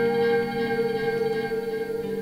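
Guitars playing long, ringing chords that hold and slowly fade: electric guitar through effects alongside an acoustic guitar.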